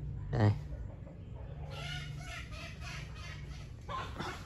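A chicken clucking in the background: a run of short calls about two seconds long, starting near the middle, over a low steady hum.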